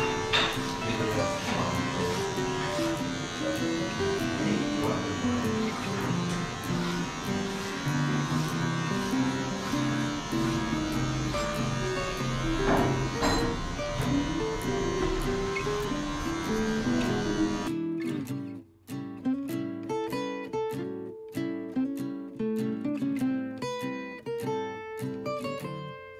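Background music over the steady buzz of a cordless electric hair clipper cutting hair. About two-thirds of the way through, the clipper sound stops abruptly and plucked acoustic guitar music carries on alone.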